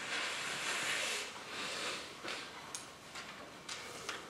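A soft rustling hiss lasting about two seconds that fades away, followed by a few faint clicks.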